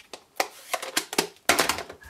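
Clear acrylic stamp blocks and ink pads being handled on a craft desk: a run of sharp taps and clicks a few tenths of a second apart, then a denser clatter of clicks near the end.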